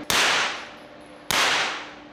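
Two single shots from a suppressed B&T APC-9 9mm carbine fired in semi-auto, about a second apart. Each crack is followed by a long echoing tail from the indoor range.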